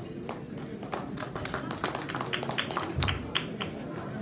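Scattered, irregular hand claps from a small audience in a hall, with a low thump about three seconds in.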